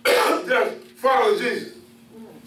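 A man clearing his throat, two short rough bouts about a second apart.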